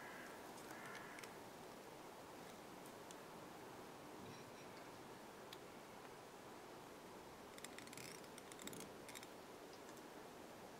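Near silence: room tone with a few faint clicks and rustles of hands handling the fly and thread at a fly-tying vise, a small cluster of them about eight to nine seconds in.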